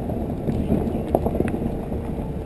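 Muffled wind and road rumble on a GoPro riding on a Toyota 4Runner as it drives a snowy dirt track. A quick run of irregular knocks and clicks comes in the middle, the loudest a little after one second in.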